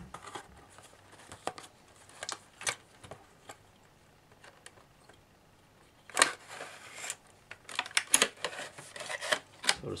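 Cardboard box and packaging being handled as a diecast model truck is taken out: a scatter of light clicks, taps and rustles, with a quieter pause in the middle before more handling noises near the end.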